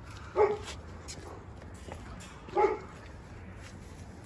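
A dog barking twice, two short sharp barks about two seconds apart.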